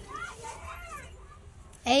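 Children's voices: faint chatter from a group of girls, then a loud shouted call starts near the end.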